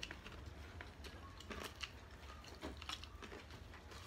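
Faint chewing of crispy fried chicken, with scattered short crunches and mouth clicks.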